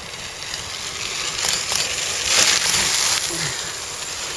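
Bicycle tyres crunching over a gravel path as cyclocross riders pass close by. The noise swells to its loudest about two and a half seconds in, then fades.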